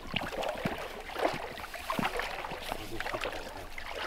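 Water sloshing and splashing in irregular bursts as anglers in waders wade through shallow, reedy loch water.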